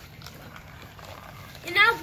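Two glass marbles rolling down plastic Hot Wheels track sections, a faint rolling sound. A voice starts speaking loudly near the end.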